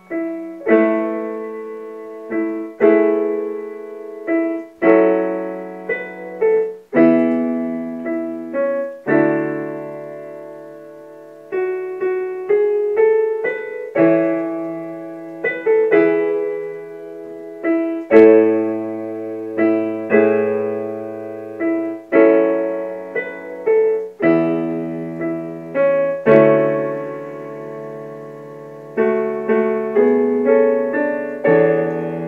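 Solo digital piano playing a slow R&B ballad: full chords over a bass line, each struck and left to ring and fade before the next, one every second or two.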